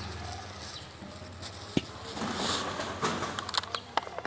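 Thin plastic bag being opened and handled, rustling and crinkling, with a sharp tap a little before halfway and a quick run of clicks and taps near the end.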